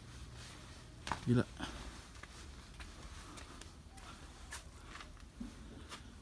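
Quiet outdoor background with a faint low hum in the first second or so and a few soft clicks, and a man's single short exclamation about a second in.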